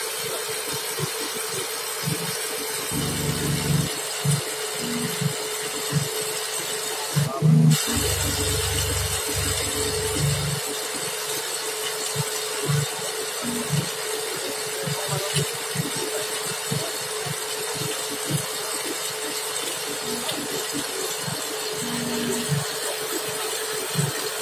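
Steady mechanical hum with a hiss from the running fiber-optic cable-blowing equipment, with irregular low thumps of handling.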